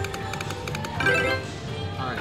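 River Dragons Sapphire video slot machine playing its electronic spin music with rapid ticks as the reels turn, then a brighter set of chime tones about a second in as the reels stop on a small win.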